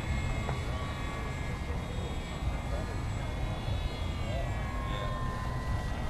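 Distant E-Flite Apprentice RC airplane's electric motor whining overhead as a thin, steady, high tone that drifts slightly in pitch, with wind rumble on the microphone.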